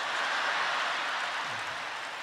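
Comedy-club audience applauding and cheering in answer to the comedian's greeting, a steady wash of clapping that swells early and slowly dies down.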